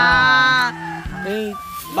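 A man's drawn-out exclamation "Hala!" held for about a second, then a brief second vocal sound, over background music.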